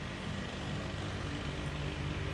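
Steady low hum with a faint hiss: the background noise of the room and recording, with no speech.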